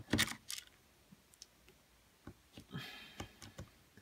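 Screwdriver clicking and scraping on a screw in the plastic housing of a JBL Flip 3 speaker as it is screwed back together: a few sharp clicks near the start, then sparse faint ticks and a soft rustle about three seconds in.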